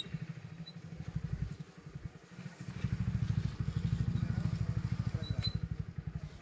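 A small engine running with a low, rapid, even pulsing; it weakens about two seconds in, then comes back stronger.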